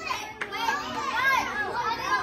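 Many children's voices talking and calling out over one another around the cake, with a single sharp click a little under half a second in.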